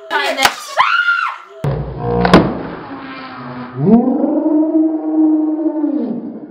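A young woman's high-pitched squeals and a long drawn-out scream in fright at a twisted latex modelling balloon she fears will pop, with one sharp snap about two seconds in.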